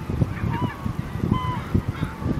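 Many gulls calling at once: short, overlapping squealing cries with quick pitch glides, over a low, uneven rumble.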